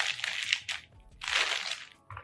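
Clear plastic packaging bag crinkling as it is handled and pulled from a box, in two rustling bursts with a short lull between.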